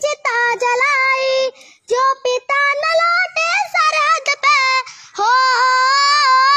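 A young girl singing a Hindi patriotic song solo and unaccompanied, in a high voice. Her phrases are broken by short pauses, and a long held line comes near the end.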